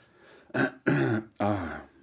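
A man clears his throat: a short rough burst about half a second in, then two longer throaty sounds from his voice.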